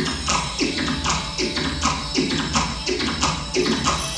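Electro-acoustic improvised music: a looping rhythmic pattern of tapping strokes, about three a second, each with a short downward sweep in pitch, over a steady low drone.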